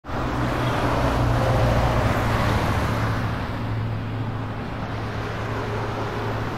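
Steady road traffic noise with a low engine hum, a little louder in the first two seconds and then easing.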